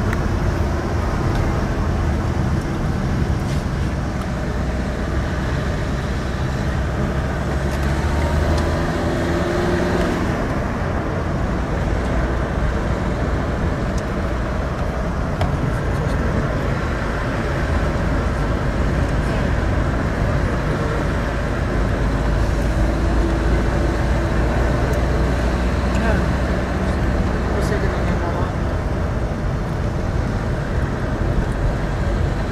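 Car engine running and road noise heard from inside the car's cabin while driving, a steady low drone.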